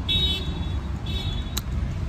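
Outdoor street noise: a steady low rumble of traffic, with two short high-pitched tones in the first second and a half and a sharp click just after.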